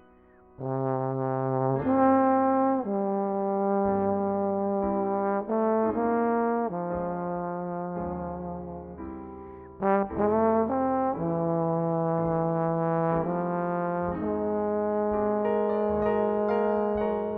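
Jazz trombone playing a slow melody of long held notes with piano accompaniment, the trombone entering about half a second in.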